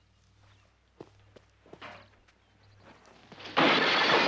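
A few soft footsteps and light knocks, then about three and a half seconds in a sudden loud crash of window glass breaking as a man is shoved into a window, which keeps going to the end.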